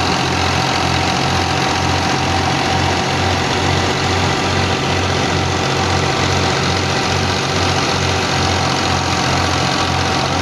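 Diesel engine of a Fiat 480 tractor running steadily under load while it drives a wheat thresher. A low beat repeats about twice a second beneath the thresher's dense, even noise.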